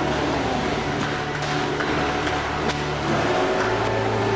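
Background music of sustained low chords, the chord changing near the end.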